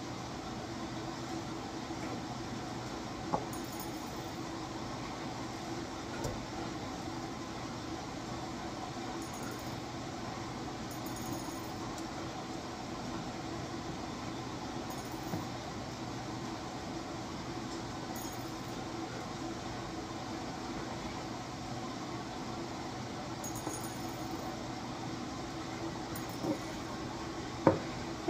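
A steady low background hum with a few faint, scattered clicks of small beads being handled and threaded onto a bracelet.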